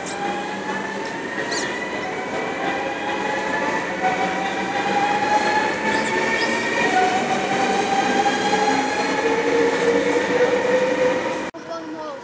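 NS yellow-and-blue double-deck electric train pulling out of an underground platform, its motors whining in several tones that rise slowly in pitch as it gathers speed, over the rumble of the wheels. The sound cuts off abruptly near the end.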